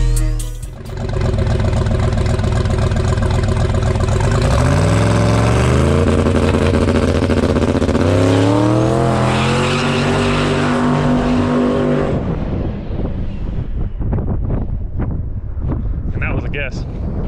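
Twin-turbo big-block Chevy V8 in a square-body C10 pickup running, then accelerating hard with its pitch climbing. The pitch drops at a gear change about eight seconds in and climbs again, then the sound fades as the truck pulls away into the distance.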